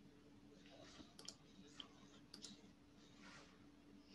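Near silence: room tone with a faint steady hum, broken by two quick double clicks, one about a second in and another about a second later.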